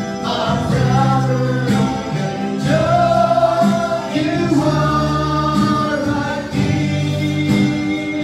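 Gospel worship song: a man singing into a microphone with held, melodic notes, backed by instruments and other voices.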